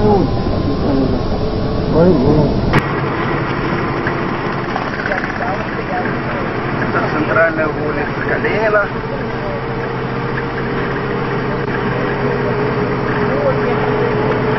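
Engine and road noise inside a moving car, with people talking over it. About three seconds in the sound changes abruptly at an edit and loses its deep rumble, and a steady tone comes in a little past the middle.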